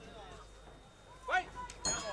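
Faint voices around the ring and a short shout, then near the end a single sharp strike that rings on with several high tones: the ring bell opening the last round.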